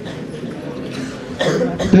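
A person coughing, a rough burst that is loudest about a second and a half in.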